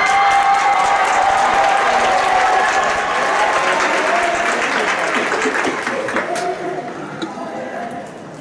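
Audience applauding, with voices shouting over the clapping. The applause dies down over the last two seconds.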